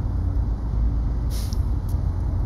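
Steady low outdoor rumble, with a short hiss about one and a half seconds in.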